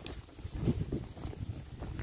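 Hooves of a ridden horse walking on a dirt and grass trail, irregular soft thumps, with wind rumbling on the microphone.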